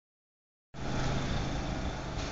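An engine running steadily with a low hum, cutting in about three-quarters of a second in.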